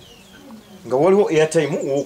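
A man's voice speaking, starting about a second in after a quieter first second.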